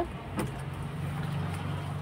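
A steady low hum from a running motor, with a single sharp click about half a second in.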